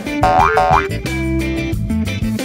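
A comic cartoon sound effect, two quick rising glides about half a second in, over steady background music.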